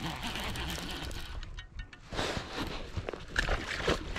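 A baitcasting reel being cranked as a catfish is reeled in, with rough handling and rustling noise and scattered small clicks.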